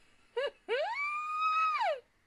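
A woman's high-pitched squeal: a brief yelp, then a longer note that rises, holds and falls away at the end.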